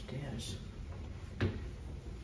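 Footsteps climbing a stairway: two footfalls on the stair treads about a second apart, the second louder.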